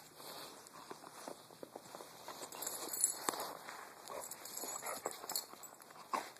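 Irregular crunching footsteps in snow, with a louder cluster of crackles about three seconds in.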